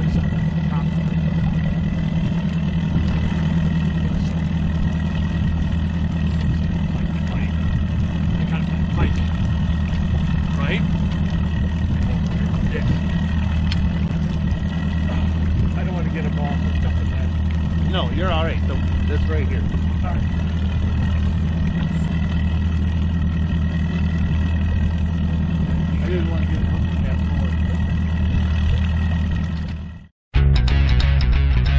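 Mercury outboard motor running steadily at trolling speed, a constant low drone with a faint high whine over it.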